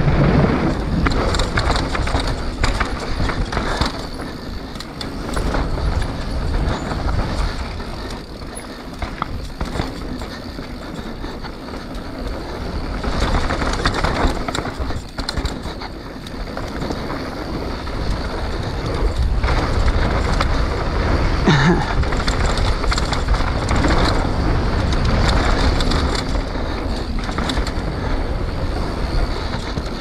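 A Canyon Spectral full-suspension mountain bike ridden fast down a dirt trail: tyres rolling over the ground, with the chain and frame rattling and knocking over the bumps. Wind rumbles over the action-camera microphone, and the loudness rises and falls with speed.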